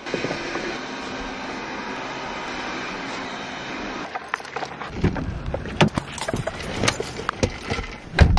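Robot vacuum running with a steady hum for about the first four seconds, then scattered knocks and rustles.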